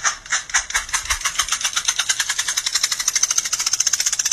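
A cat's hind paw scratching rapidly at its plastic cone collar: a run of light tapping, scratching strokes that speeds up steadily to a fast, engine-like rattle.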